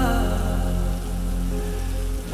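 Steady rain ambience mixed into a slowed, reverb-heavy lofi song, heard in a gap between sung lines: an even rain hiss over held low bass notes, with the last sung note trailing off at the start.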